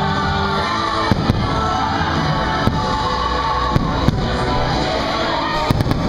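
Fireworks show soundtrack music playing loudly, with the sharp bangs of fireworks shells bursting over it: several scattered bangs, then three in quick succession near the end.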